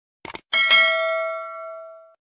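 A quick click, then a single bell ding sound effect that rings and fades away over about a second and a half.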